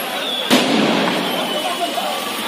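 Firecracker stock in a burning shop going off: one sharp loud bang about half a second in, followed by a sustained crackling rush that slowly eases, over the voices of a crowd.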